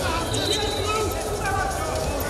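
Indistinct voices calling out across a large, echoing indoor arena, over a steady low hum.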